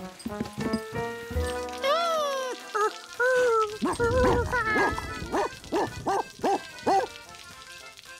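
A cartoon dachshund's voice: short barking calls, with a run of about six quick barks in the second half, over background music.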